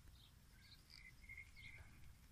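Near silence, with a few faint, short bird chirps.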